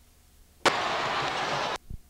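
A burst of static-like noise about a second long that starts and stops abruptly, then a short low thump: edit or splice noise between recorded broadcast clips.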